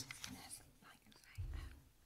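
Faint, low murmured voices in a meeting room, with a short low thud about one and a half seconds in.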